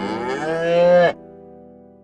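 A cow mooing once, one long call rising in pitch that cuts off sharply about a second in, over intro music whose last chord then fades out.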